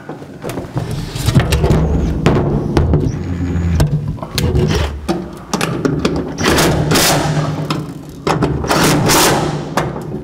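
Cordless impact driver running in the gas pedal's mounting bolts in several short bursts, with knocks of the pedal and bolts being handled in between.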